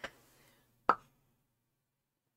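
A single short, sharp click about a second in, with near silence around it.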